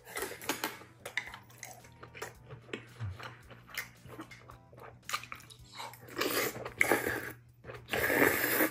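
Close-miked eating sounds: chewing with many small, wet mouth clicks while eating hot beef rice soup and side dishes. A couple of louder breathy bursts come about six to seven seconds in.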